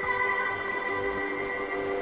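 Test tune playing from a Samsung Galaxy A51's loudspeaker during its hidden-menu speaker test, a run of long held notes; the speaker is working properly.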